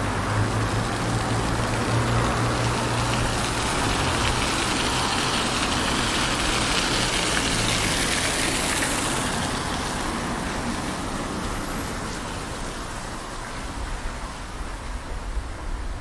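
Fountain water pouring from a steel pipe sculpture and splashing onto paving stones, a steady rushing splash that fades after about ten seconds. A low steady hum from road traffic runs under it at first.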